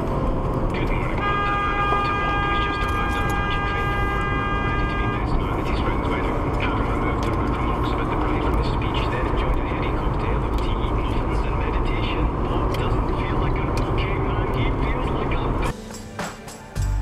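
Car horn sounding in one long, steady blast of about four seconds, starting about a second in, over the steady road and engine noise inside a moving car's cabin.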